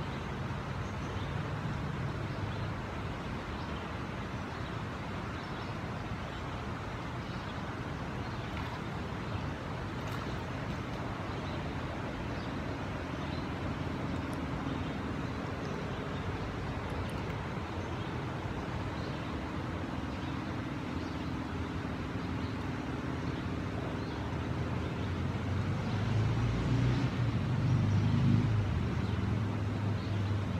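Steady rush of flowing river water. A low engine hum comes and goes faintly in the middle and swells louder near the end.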